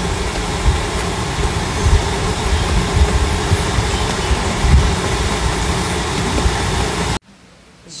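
Wind buffeting a phone's microphone: a loud, continuous rushing noise with an irregular low rumble that gusts up and down, cutting off abruptly near the end.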